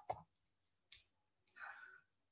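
Near silence, with a single faint computer-mouse click about a second in that advances a presentation slide, then a short soft hiss.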